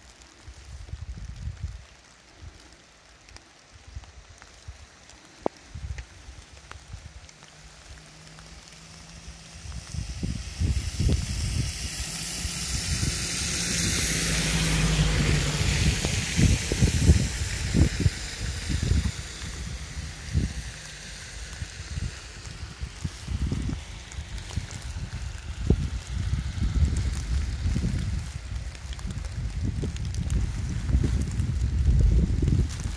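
Wind buffeting the microphone in uneven gusts. About a third of the way in, a vehicle approaches on a wet road: its engine hum and tyre hiss swell to a peak around halfway, then fade away.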